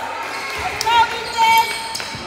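Sneakers squeaking on a hardwood gym floor during basketball play: two short squeaks, about a second in and again half a second later.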